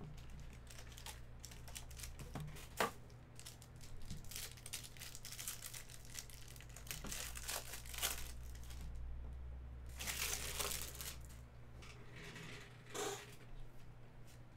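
Plastic wrapper being torn open and crinkled off a stack of trading cards, in irregular rustling bursts with a few sharp clicks.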